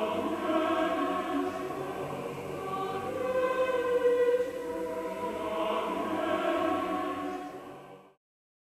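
Choral music with long held, swelling voices, fading out just before the end.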